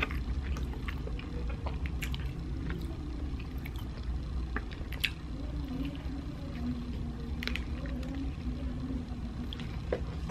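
A person chewing and biting a sesame-seed burger close to the microphone: irregular wet mouth clicks and squishes, with a sharper click about five seconds in, over a steady low room hum.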